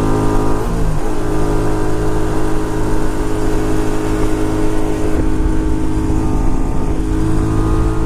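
1982 Honda Silver Wing's 500 cc 80-degree V-twin running at highway speed in top gear, holding a steady high-revving drone that the rider calls kind of screaming at those speeds. It is heard from the rider's seat, with wind rushing over the microphone.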